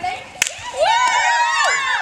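A single sharp hand slap, like a high-five, about half a second in, followed by high-pitched excited shouting from a group of children.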